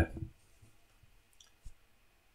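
The last syllable of a man's word at the very start, then quiet room tone broken by two faint clicks, the second a short low knock, about a second and a half in.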